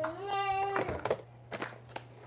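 A baby's short, held vocal sound, a steady high 'aah' of just under a second that rises in pitch at its onset, followed by a few faint light knocks.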